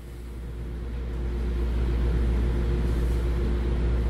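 Steady low rumble with a faint steady hum, growing a little louder over the first two seconds.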